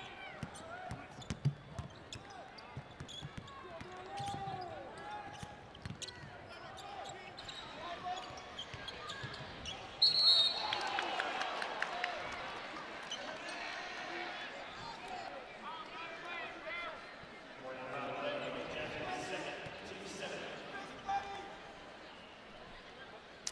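Arena sound of a basketball game in play: a ball dribbling and sneakers squeaking on a hardwood court over crowd noise. About halfway through, a short sharp referee's whistle stops play for a foul, and the crowd gets louder after it.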